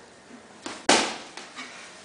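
Boxing-glove punches landing: a light hit, then a loud, sharp smack just under a second in that dies away quickly, and a fainter hit after it.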